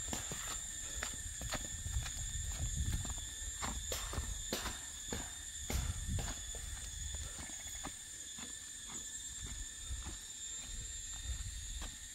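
Footsteps walking along a trail, irregular knocks about two a second, over a steady high drone of insects.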